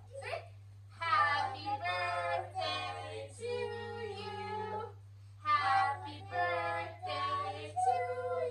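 A young child and a woman singing a short song together, in two phrases with a brief pause between them, over a steady low hum.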